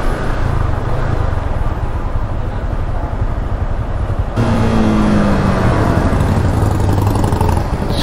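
Motorcycle engine running at low speed, heard from the rider's seat as a steady low rumble. About halfway through the sound changes abruptly and the engine note becomes clearer and a little louder, its pitch rising and falling slightly.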